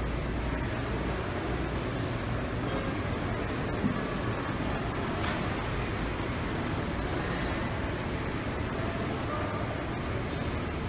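Steady background room noise, a low rumble with a hiss over it, with a single faint knock about four seconds in.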